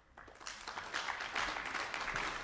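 Audience applause starting with a few scattered claps and swelling into full, steady clapping within about a second.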